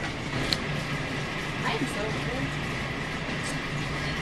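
Grocery store ambience: a steady low hum with a faint high steady tone, and faint voices of other shoppers in the background. A single light click about half a second in.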